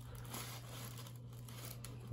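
Faint rustling and handling noise as a hand flexes a running shoe's rubber sole over a box of tissue paper, with a low steady hum underneath.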